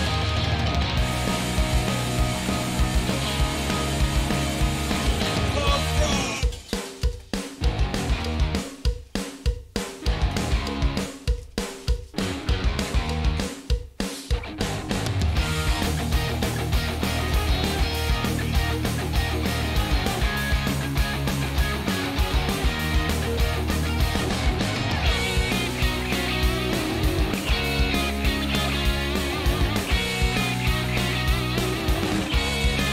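Loud rock music led by electric guitar. About six seconds in it breaks into a run of short stabs with gaps between them, and at about fifteen seconds the steady music comes back in.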